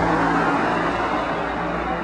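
Road traffic: a car driving along the street, with a steady engine hum under tyre and road noise. It is loud at once and eases off slowly.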